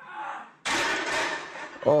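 A loaded barbell crashes down into a squat rack as a failed squat is dumped: a sudden loud crash lasting about a second. Near the end a man exclaims "oh", falling in pitch.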